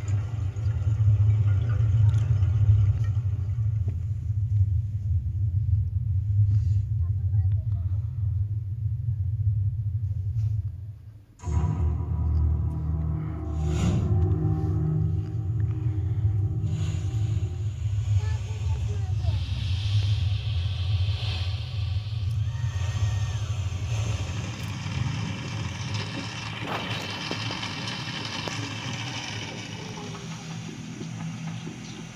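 Soundtrack of a projected nature film played over loudspeakers in a large hall: a deep, heavy rumble that cuts out suddenly about eleven seconds in and comes straight back, with music and brighter rushing noise building in the second half.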